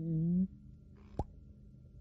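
A short vocal cry from a cartoon mole character, lasting about half a second, followed a little over a second in by a single short pop.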